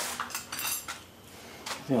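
Metal clinks and knocks on a workbench as a cordless drill with a socket and the removed Briggs & Stratton cylinder head are set down: a few sharp clinks in the first second and one more near the end.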